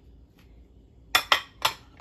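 Ceramic dishes clinking: three short, sharp knocks in quick succession about a second in, as a small white dish is handled and set down against another.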